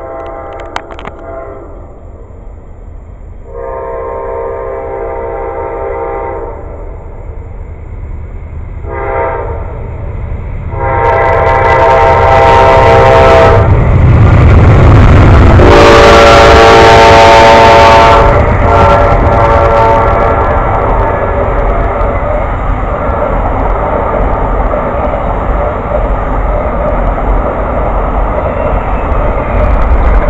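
A train's locomotive air horn sounding a series of long and short blasts as it approaches. The pitch drops as the locomotive passes close by, which is the loudest moment. From about two-thirds of the way in, the train's cars roll by with a steady rumble.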